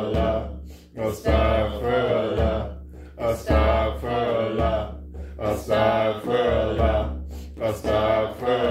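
Group of voices chanting 'Astaghfirullah' in a repeated melodic phrase, one repetition about every two seconds, during Sufi dhikr. A frame drum beats a deep thump at the start of each phrase.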